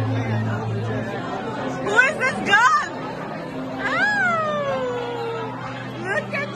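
People's voices in a noisy room over background music with a steady bass line, including short calls about two seconds in and one long falling call around four seconds in.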